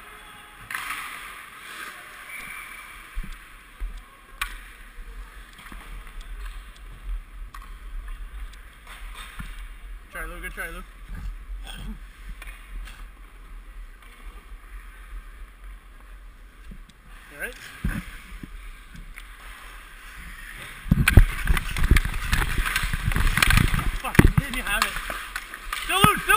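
Ice hockey skates scraping and carving on the ice, with sharp clicks of sticks and pucks in a rink. It gets much louder about 21 seconds in, with a heavy low rumble on the helmet-mounted microphone as play piles up around the net.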